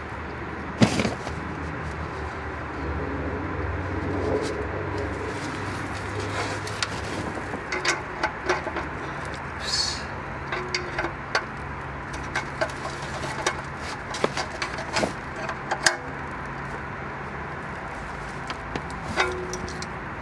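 Irregular small clicks and taps of hands working the oil pan drain plug tight, over a steady low hum.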